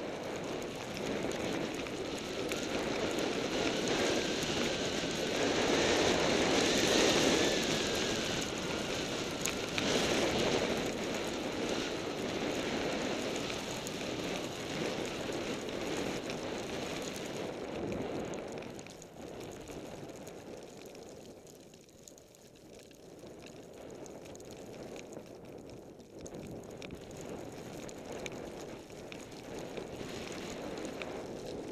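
Skis running through deep powder snow, with wind rushing over the camera's microphone as a steady hiss. The noise is loudest in the first ten seconds, falls away around twenty seconds in, then builds again.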